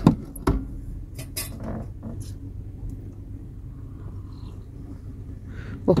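A few light metallic clicks and clinks in the first couple of seconds as the clutch pedal linkage of a Mercedes van, which had come apart, is worked back together by hand, over a low steady hum.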